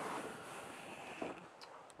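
Faint rustling hiss of camera handling noise as the camera is carried between rooms, fading over the two seconds, with a couple of soft ticks.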